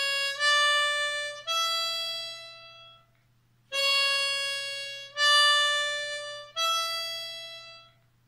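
Solo diatonic harmonica in A playing a short rising three-note phrase, hole 5 blow, hole 5 draw, hole 6 blow, twice over, the last note of each run held and fading away.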